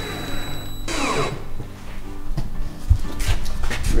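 Cordless drill-driver running as it drives a screw into a wooden ridge cap. It stops about a second in with a falling whine as the motor winds down. Background music plays throughout, and a couple of low knocks come near the end.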